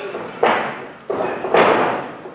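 Heavy thuds of bodies hitting a wrestling ring's mat, three in about a second, each ringing out in the hall.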